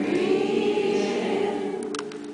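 An a cappella choir singing, holding long, steady chords; a new phrase comes in at the start and slowly fades.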